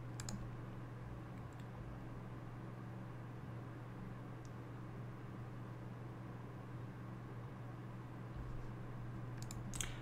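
Faint, steady low hum from a desktop PC picked up by the microphone during a deliberately silent recording. A single mouse click comes just after the start and another near the end.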